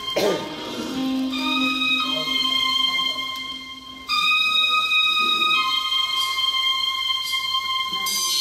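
Saxophone playing a slow melody of long held notes, each lasting one to two seconds, over a backing accompaniment with a low sustained tone in the first few seconds.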